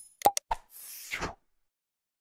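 Sound effects of an animated subscribe-button graphic: a few quick mouse clicks and a pop about a quarter of a second in, followed by a short soft whoosh.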